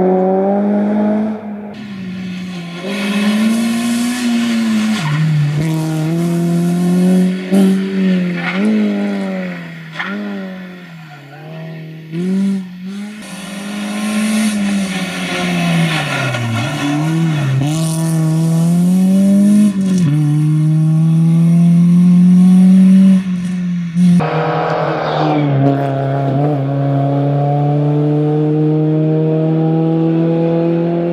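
Rally-prepared Renault Clio engine revving hard and dropping back again and again through gear changes and lifts as the car approaches and passes at speed. After a sudden cut about three quarters of the way through, the engine is heard again accelerating with a steadily rising pitch.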